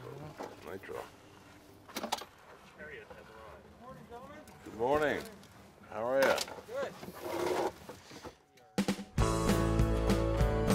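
Indistinct voices, unclear enough that no words can be made out, loudest about five and six seconds in. About nine seconds in, country guitar music starts suddenly and carries on.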